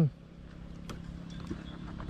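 A motorcycle being pushed forward a short way by hand: faint scuffing and a few soft clicks over a low steady hum.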